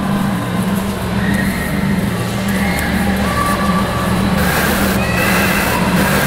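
Soundtrack of an audio-visual projection-mapping artwork: a low, steady drone with short high tones that come and go over it, growing busier near the end.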